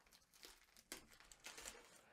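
Near silence, with faint crinkles and a few small clicks of wrapping paper as a wrapped present is handled.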